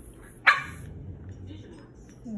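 A single short, sharp dog bark about half a second in: a play bark, given while a puppy is crouched in a play bow.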